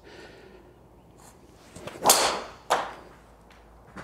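A full driver swing: a whoosh that swells into the strike of the ball off the tee about two seconds in, followed about half a second later by a second, sharper knock.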